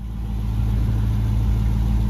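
A vehicle engine idling, a steady low hum.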